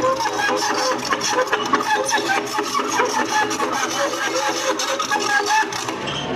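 Excavator's steel crawler tracks squealing and clicking rapidly and evenly as the machine travels, with a wavering squeal over the rattle. The tracks are dry, which the operator blames on the dry weather.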